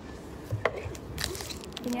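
Handling noise from a plastic drink bottle's cap and a plastic-wrapped straw: a sharp click about half a second in, then a short rustle and a few light clicks.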